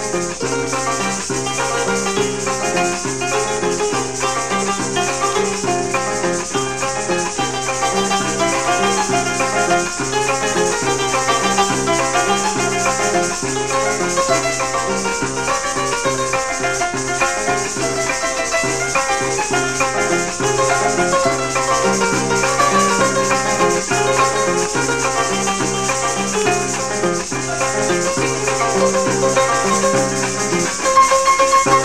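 Instrumental Venezuelan llanera music: a harp plays a running melody over a repeating low bass pattern, with maracas shaking steadily throughout.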